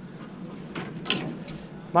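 Golf clubs rattling and clinking in a golf bag as one iron is put away and another pulled out, with a sharp click about a second in.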